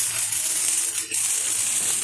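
Hand-held sparklers burning, a steady high fizzing crackle of spitting sparks with a brief dip about halfway.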